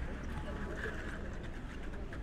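Outdoor street ambience: background voices of people around, over a steady low rumble.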